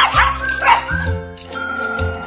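A small dog yipping, a couple of short high calls at the start and another just under a second in, over background music with a steady bass line.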